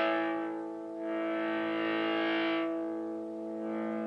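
Electric guitar chords through the VVT X-40's 6L6 all-tube head on its overdrive channel, restruck about a second in and again near the end, each left to ring out. The drive thins, the last chord weaker and less bright, as the clean channel's input gain is turned down: that gain feeds the overdrive channel like the first stage of a cascade.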